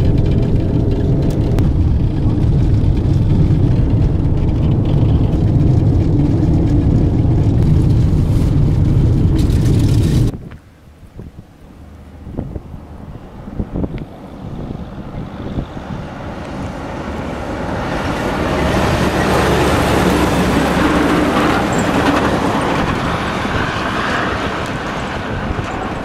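Steady low rumble of road and engine noise inside a vehicle driving on a gravel road, cutting off abruptly about ten seconds in. Then a semi truck approaches along the gravel highway, its tyres and engine building to a loud rush as it passes and easing off near the end.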